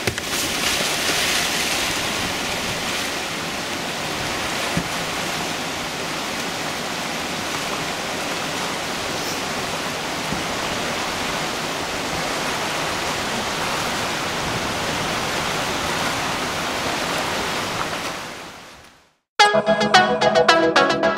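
Whitewater rapids rushing steadily down a bedrock river, with a kayak splashing into the water off the bank at the start. The water sound fades out near the end and electronic music starts abruptly.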